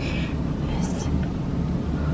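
Soft, partly whispered speech, with hissy breathy syllables near the start and about a second in, over a steady low rumble.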